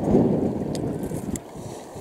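Wind buffeting the microphone, a low rumble that eases off over the two seconds, with a couple of faint ticks.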